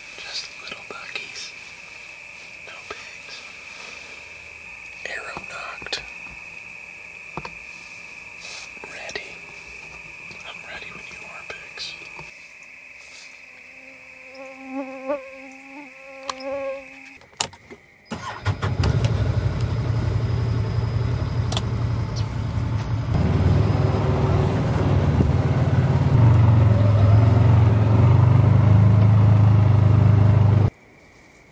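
A vehicle driving on a dirt track: a loud, steady low engine rumble that starts suddenly about eighteen seconds in and grows louder toward the end. Before it, a quieter stretch with a steady high-pitched whine and scattered faint clicks.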